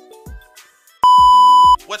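Intro backing music with stepping melody notes and two low drum hits, cut across about a second in by a loud, steady, single-pitched bleep tone lasting under a second.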